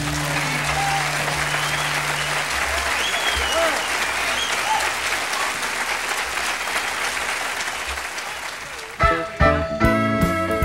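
Audience applauding and cheering on a live country recording, with a few whistles, slowly fading. About nine seconds in, a new country song starts with guitar.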